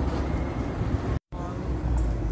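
Rolls-Royce Cullinan SUV rolling past at low speed: a steady low rumble of engine and tyres, broken by a short gap about a second in.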